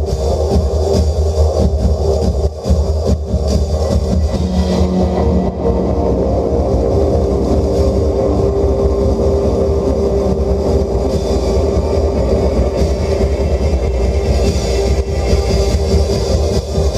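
Live electric guitar and drum kit playing a droning instrumental passage: a sustained low rumble with held notes over it, and a few light drum hits in the first few seconds.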